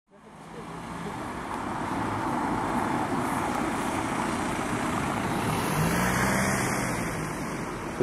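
A car driving past, engine and tyre noise growing to a peak about six seconds in and then easing off.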